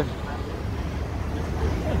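Street traffic: a steady low rumble of cars driving through a city intersection.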